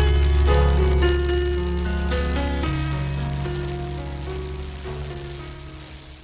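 Radio music bed: held chords over a steady low bass note, changing every second or so and slowly fading, with a hiss underneath throughout.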